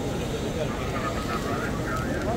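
Chatter of a large crowd, many voices talking at once over a steady low rumble.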